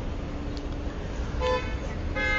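A vehicle horn gives one short, steady honk about a second and a half in, over a low steady hum.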